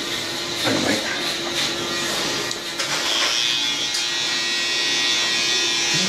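Electric hair clippers buzzing steadily as the barber tidies the customer's neckline.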